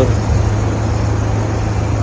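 Steady roadside traffic noise: a constant low rumble under an even hiss.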